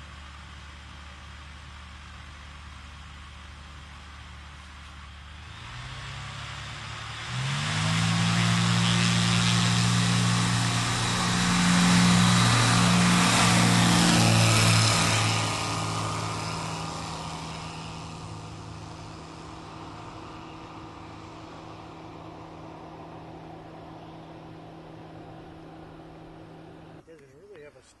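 Zenith CH701 light kit aircraft's propeller engine running steadily, then opening up to full power about a quarter of the way in for the takeoff roll. It is loudest as the plane rolls past around the middle, then fades steadily as the plane moves away.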